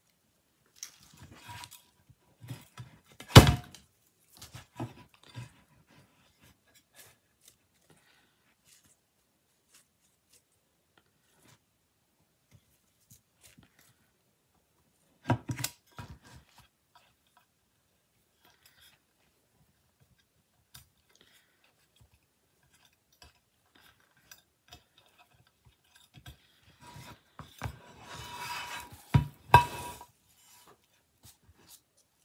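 Handling sounds on a craft tabletop as a ribbon bow is tied: a sharp knock about three seconds in and another around fifteen seconds, then a stretch of rustling and small knocks near the end, with long quiet gaps between.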